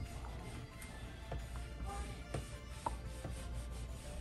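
Faint background music, with a few soft taps and rubs from a small craft iron being pressed and slid over folded cotton fabric.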